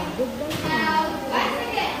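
Several young children's voices at once, chattering and calling out over one another.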